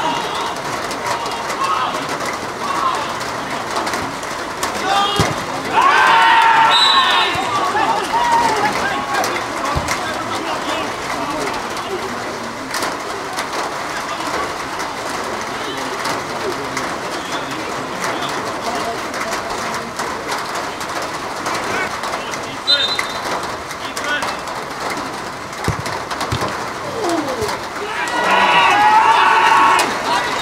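Shouting voices of football players on an open pitch, loudest about six seconds in and again near the end, over steady outdoor background noise with birds calling.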